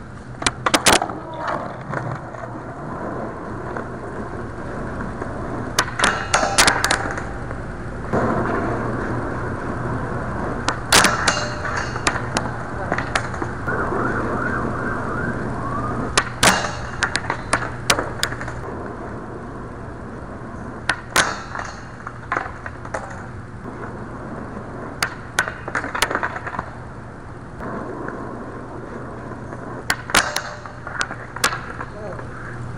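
Skateboard wheels rolling on asphalt, broken by repeated sharp clacks as the board pops, lands and its trucks strike and grind a low metal flat bar, attempt after attempt. A steady low hum runs underneath.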